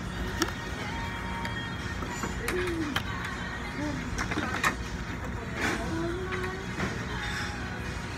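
Restaurant ambience while waiting for an order: background music over a steady low hum, with scattered clicks and clatter and faint distant voices.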